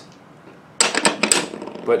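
Steel deep sockets being set onto the posts of a billet-aluminium socket tray: a quick run of sharp metallic clicks and clinks starting about a second in.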